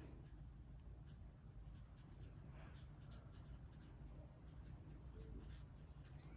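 Near silence: faint room tone with light, scattered scratching and ticking sounds.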